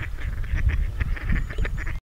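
Waterfowl calling, many short quacking calls in quick irregular succession, over a heavy low rumble of wind on the microphone.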